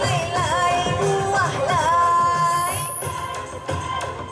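A Malay pop song sung live over backing music, the voice bending through ornamented notes and then holding one long note about two seconds in.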